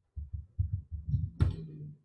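Computer keyboard typing, heard as a quick run of dull low thumps with one sharper click about one and a half seconds in.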